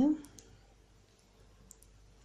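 Faint light clicks of metal knitting needles as stitches are bound off, two near the start and two close together near the end.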